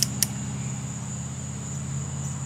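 Steady outdoor background: a thin, high, continuous insect drone over a steady low mechanical hum, with two sharp clicks right at the start.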